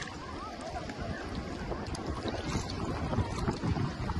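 Shallow sea water lapping and splashing around a floating body close to the microphone, with wind buffeting the microphone.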